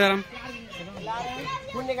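Speech only: a man's word ends at the start, then several voices, children's among them, talk and call in the background.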